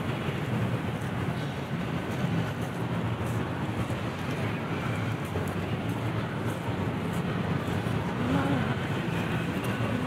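Steady city background noise: a continuous hum of distant traffic with a low rumble, and a passer-by's voice briefly near the end.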